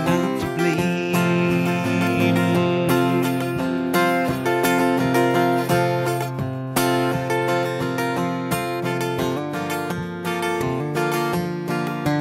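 Two acoustic guitars playing together in an instrumental break, one strummed and the other picking notes over it.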